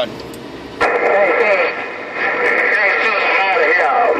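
President HR2510 radio receiving on the CB band: a brief low hiss, then about a second in a distant station's voice comes through the speaker, thin, narrow and warbling, too garbled to make out words.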